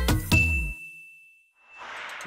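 The end of a short electronic intro jingle: a last couple of percussive hits, then a single high bell-like ding that rings on and fades away over about a second and a half. A soft hiss comes in near the end.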